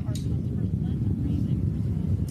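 Steady low rumble of the New Shepard booster's BE-3 liquid-hydrogen engine burning during ascent, with a faint voice briefly in the background about halfway through.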